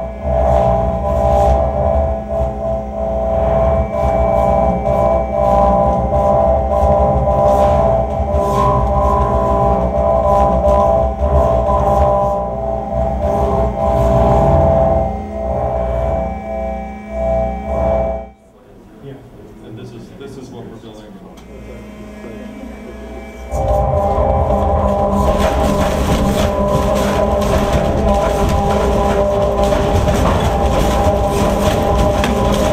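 Hydraulic shake table running under a half-size cob house model: a heavy rumble with a steady whine of several held tones and many sharp knocks. It drops away about 18 seconds in and comes back at full strength about five seconds later.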